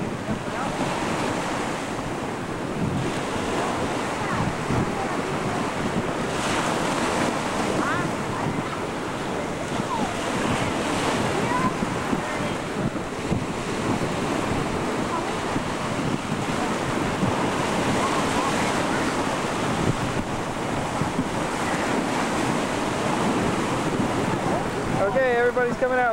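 Sea waves washing and lapping in shallow surf, a steady rushing wash, with wind buffeting the microphone.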